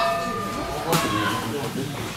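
Boxing ring bell ending the round, its ring fading out over the first second. A sharp knock comes about a second in, and voices run through it.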